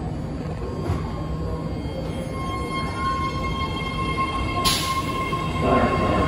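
A BART Fleet of the Future subway train pulls out of the station: a low steady rumble of the train, with a steady whine coming in about two seconds in. A sudden hiss starts near the end, and the train grows louder as it gathers speed.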